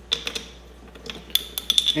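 Plastic bottles being handled: a few sharp clicks and crinkles just after the start, then a quick run of clicks in the second half as a small plastic bottle is picked up.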